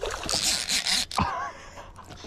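A hooked fish thrashing and splashing at the water's surface beside the boat, for about a second before it dies down.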